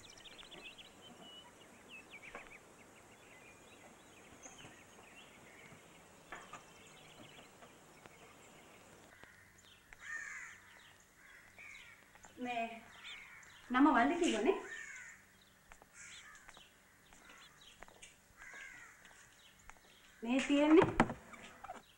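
Crows cawing in a few harsh calls in the second half, the loudest around two-thirds of the way through, over faint background hiss with small bird chirps.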